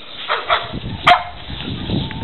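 A dog barking: three short barks within about a second, the last the loudest.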